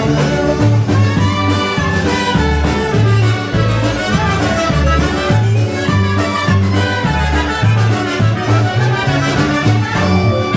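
Live polka band playing: clarinets and trumpet lead over concertina, electric guitar, keyboard and drums, with a steady bass beat.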